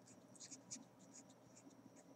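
Faint scratching of a pen writing on paper, in a series of short strokes.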